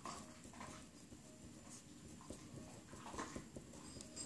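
Faint scratching and squeaking of a felt-tip marker colouring on paper, in short repeated strokes.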